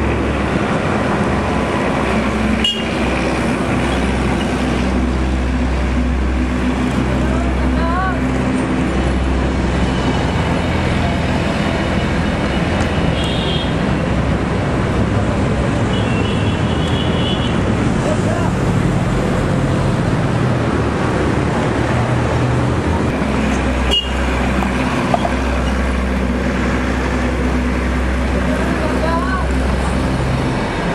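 Busy street noise: steady traffic rumble with indistinct voices.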